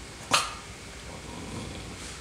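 A dog gives a single short, sharp bark about a third of a second in, speaking on command.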